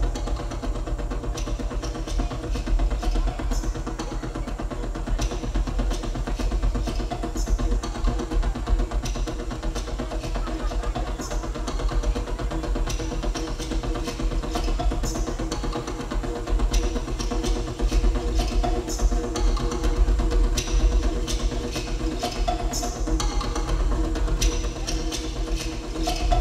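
Live electronic music from synthesizers: a steady deep bass drone and several held tones under scattered, irregular clicky percussive hits.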